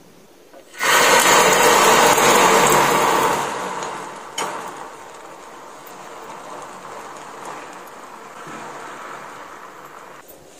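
Whisked egg mixture hitting a hot tawa griddle about a second in and sizzling loudly, then settling into a quieter, steady sizzle as it spreads and cooks. A single sharp tap about four seconds in.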